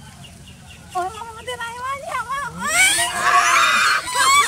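A young woman squealing and shrieking, her voice climbing in pitch and getting louder and harsher toward the end, as goats jump up on her for food.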